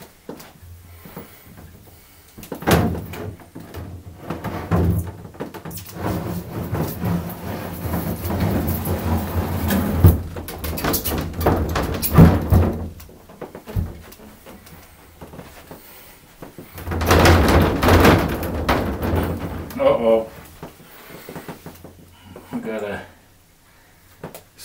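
A large plexiglass panel, gripped by suction-cup handles, is lifted and fitted into a display cabinet. There are a few separate knocks at first, then a long stretch of the acrylic rubbing and scraping against the cabinet frame, and a second loud stretch of scraping and knocking about two-thirds of the way through.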